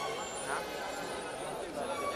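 Street crowd: many people talking over one another, with a motor vehicle running.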